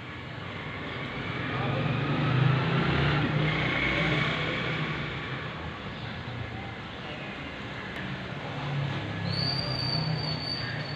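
A motor vehicle passing in the street, its engine and road noise swelling to a peak about two to three seconds in and then fading.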